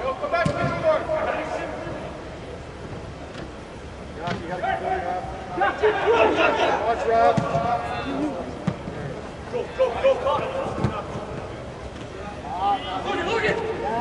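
Soccer players shouting and calling to each other during play inside an air-supported sports dome, with a few short sharp knocks of the ball being kicked.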